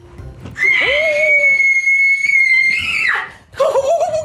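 A woman's long, high-pitched excited scream, held on one note for about two and a half seconds and cutting off suddenly about three seconds in. Excited shouting starts near the end.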